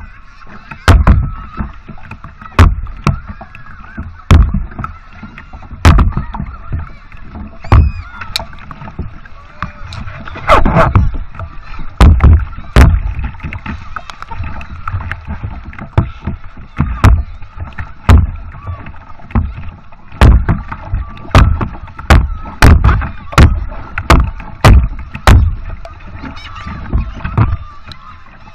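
Wooden paddle strokes in the sea and water splashing against a camera at water level as a small craft is paddled: a run of sharp splashes about once a second, coming quicker in the last third.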